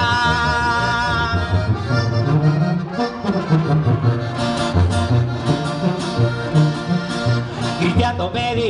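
Live norteño band playing an instrumental break: button accordion carrying the melody, starting on a held chord, over alternating tuba bass notes and a strummed acoustic guitar in a bouncing two-beat rhythm.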